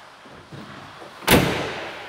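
2019 Ford F-250 pickup tailgate swung up and slammed shut: one loud, solid thud a little over a second in, ringing briefly as it fades.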